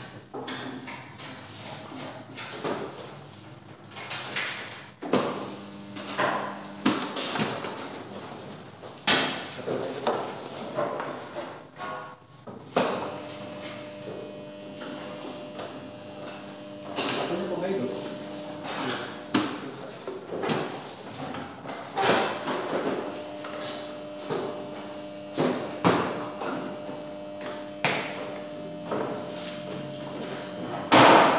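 Repeated knocks and clatter from a metal electrical control panel enclosure being handled: its hinged lid unfastened and swung open and the wiring and contactors inside handled. A faint steady hum runs underneath through much of it.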